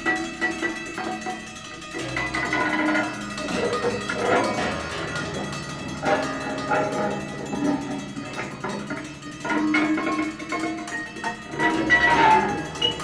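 Free improvised music from a trio: overlapping held pitched tones with plucked, metallic and knocking sounds, scattered irregularly and without a steady beat.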